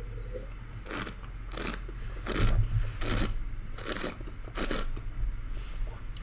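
Mouth sounds of a person tasting red wine: a sip, then a string of about seven short slurps as the wine is worked around the mouth.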